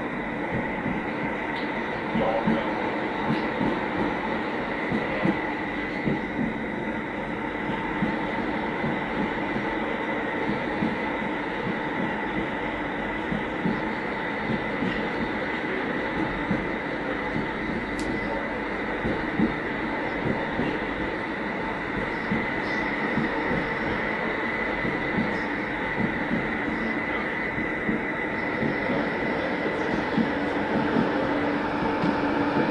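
Tram running along street track, heard from inside the front of the car: a steady rolling noise of wheels on rail with a constant whine held throughout. A single brief click comes about halfway through.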